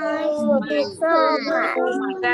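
Children's voices reading a sentence aloud together in a drawn-out, sing-song chant.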